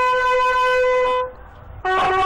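A lone bugle playing a slow funeral salute call: one long held note that dies away a little over a second in, a brief pause, then shorter notes start again near the end.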